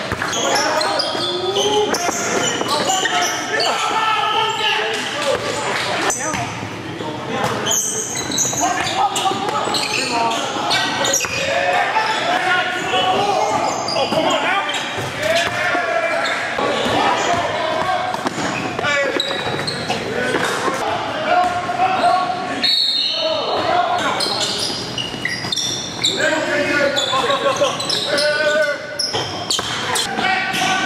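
A basketball bouncing on a hardwood gym floor amid indistinct shouts and talk from players and spectators, echoing in a large hall.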